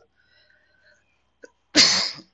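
A person sneezing once, a short sharp burst near the end.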